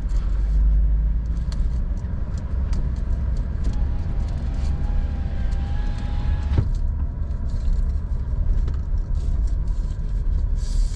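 Car heard from inside the cabin while driving slowly: a steady low rumble of engine and tyres, with scattered light clicks and rustles. A faint thin whine sounds for a couple of seconds near the middle and ends in a sharp click.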